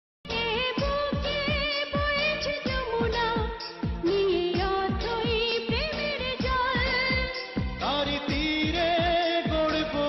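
South Asian film-style song: a woman's voice singing with strong vibrato over a steady beat of drum strokes that slide down in pitch. A lower voice takes over the melody near the end.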